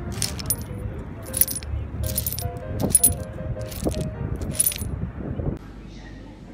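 A short piece of music built from found objects: bright, ringing clinks and taps of stones and shards, about one or two a second, over a simple stepping tune. It stops abruptly shortly before the end.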